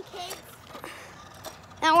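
Mostly quiet outdoor background with a faint voice early on; near the end a boy starts talking loudly.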